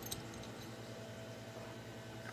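Quiet room tone with a steady low hum, and a faint light clink of the metal jig and treble hook just after the start.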